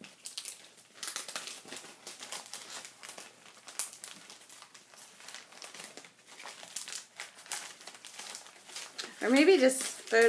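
A stack of paper scrapbook embellishments and sticker sheets being leafed through by hand, rustling and crinkling in a run of small crackles; a woman starts to speak near the end.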